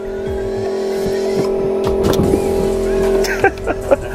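A small engine running steadily at a constant pitch, with a few light knocks near the end.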